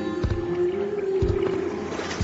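Music: a long held low note that wavers slightly in pitch and fades near the end, over a soft low beat about once a second.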